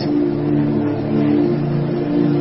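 Background music: one chord held steadily, several low notes sustained without change.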